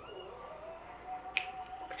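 A single sharp click about halfway through, over a faint steady tone.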